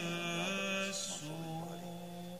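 A single male voice singing Byzantine chant, holding long notes that slide and bend between pitches in slow, melismatic phrases.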